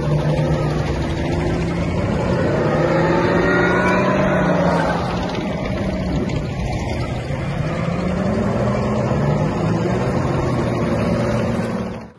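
Engine of a tracked armoured vehicle running under way, heard from on board, with the engine note rising and falling slightly as it drives.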